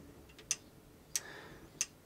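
Three sharp clicks about two-thirds of a second apart, with a brief faint whir after the second: a FoxAlien 4040-XE CNC router's X axis being jogged slowly in until its microswitch limit switch trips.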